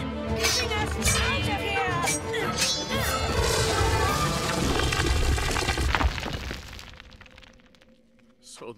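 Cartoon sound effects of a sword striking a rock wall several times and the wall crashing open, rubble rumbling, over dramatic orchestral music; the rumble and music die away over the last two seconds.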